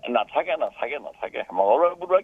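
Speech only: a man talking over a telephone line, the voice thin and cut off in the highs.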